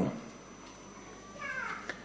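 Quiet room tone, then about a second and a half in a short, faint, high-pitched cry with a slightly falling pitch, like a mew.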